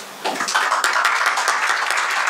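Audience applauding, breaking out about a quarter second in as many quick, overlapping claps.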